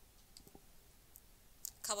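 Near silence with a few faint, brief clicks, then a woman's voice begins near the end.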